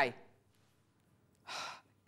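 The tail of a spoken word, a short pause, then a woman's quick audible intake of breath near the end.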